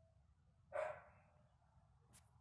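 A dog barks once, briefly, a little under a second in.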